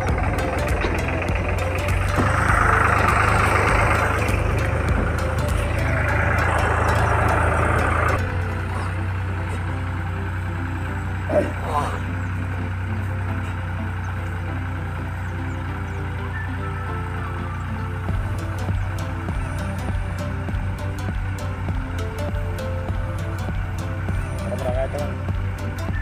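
New Holland tractor's diesel engine running steadily as it pulls a cultivator through soil, with one short sharp sound about eleven seconds in.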